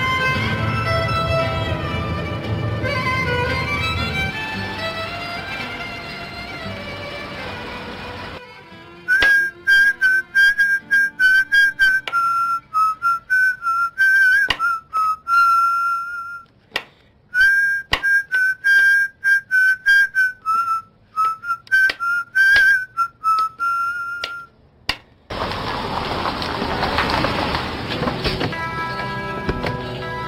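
Soft string music for about the first eight seconds. Then a man whistles a tune while a knife knocks sharply and repeatedly on a cutting board. Near the end a steady rushing noise comes in under the music.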